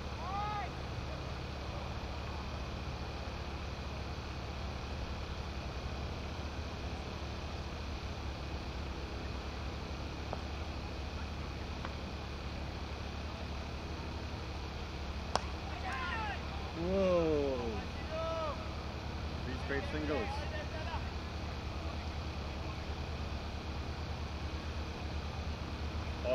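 A steady low rumble of background noise, then about fifteen seconds in a single sharp crack of a cricket bat striking the ball. Players' shouted calls follow over the next few seconds, the loudest right after the hit.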